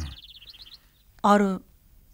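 A bird chirping: a rapid run of short high notes in the first second, then a man says a single word.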